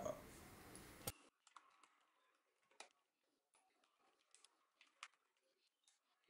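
Near silence with scattered faint small clicks and ticks from handling the plastic housing of a DJI Mavic Pro remote controller and its tiny screws during disassembly. A faint hiss fills the first second and cuts off suddenly.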